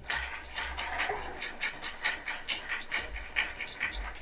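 Audience applauding, a steady run of clapping.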